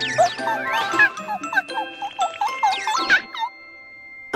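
Comic cartoon sound effects: a quick run of short sliding squeaks and whistles, with a larger sweep near the end, for a drawn monkey scrambling up a tree. Light tinkling children's music plays underneath.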